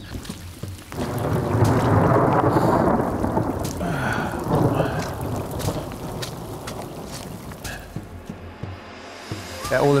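Rolling thunder: a rumble that swells about a second in, peaks soon after and dies away slowly over several seconds.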